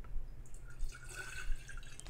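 Distilled water pouring from a plastic gallon jug into an empty glass one-quart mason jar, filling it; the splashing begins about half a second in.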